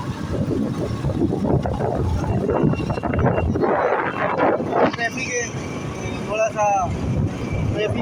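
Motorcycle riding along a road, its engine running under heavy wind noise on the microphone that gusts strongest about halfway through. A few short wavering pitched sounds, calls or horns, come between about five and seven seconds in.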